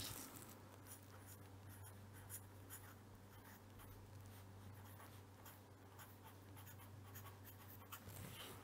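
Faint scratching of a pen writing by hand on paper, in short strokes, over a steady low hum.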